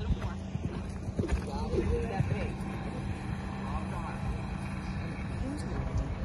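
Wind rumbling and buffeting on a phone's microphone, with faint voices in the background.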